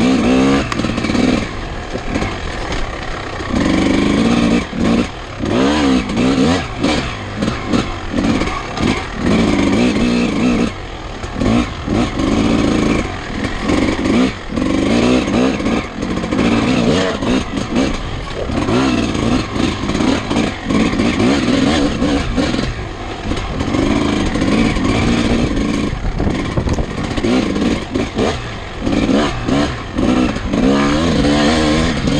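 Vintage dirt bike engine heard from on board, revving up and dropping back over and over as the rider opens and closes the throttle, with frequent knocks and rattles from the bike over rough ground.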